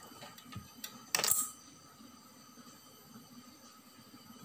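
A single short, sharp clink of a small hard object a little over a second in, with a few faint ticks before it.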